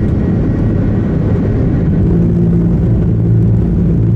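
Airbus A330-300 jet engine heard from inside the cabin at near-full takeoff thrust: a loud, steady rumble with a low droning hum. This is the right engine just after it was hit by a flock of birds, running on with a changed tone and vibrating strongly.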